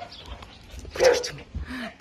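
A dog barks once, about a second in, followed by a short whine near the end.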